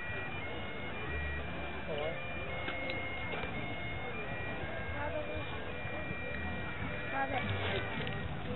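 Bagpipes playing a tune of held notes that step in pitch over a steady drone, with crowd chatter around them and a few short clicks near the end.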